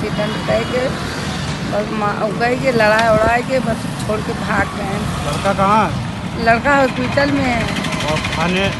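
A woman talking, with the steady noise of road traffic underneath.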